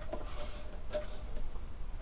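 Faint, scattered light clicks and ticks of a steel tape measure being handled while held out along a blade.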